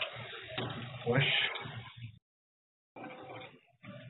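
Muffled, voice-like sound with handling noise, heard through a doorbell camera's narrow-band microphone. The sound drops out completely about two seconds in and returns fainter near the end.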